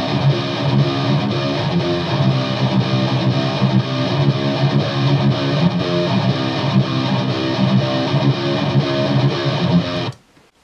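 Distorted metal rhythm guitars, four tracks layered into one thick wall of sound, playing a steady riff without any other instruments. They cut off abruptly right at the end.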